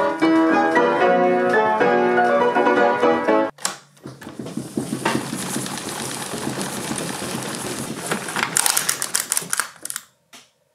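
A pianola playing from its paper roll: quick piano notes that cut off about three and a half seconds in. After that comes a steady hiss with irregular clattering and clicking from the pianola's roll and pneumatic mechanism, and the clicks grow dense and rapid near the end.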